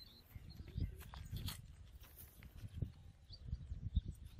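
Faint irregular knocks, scrapes and clicks of barbed wire and binding wire being handled and tied on a stone fence post, with a few bird chirps.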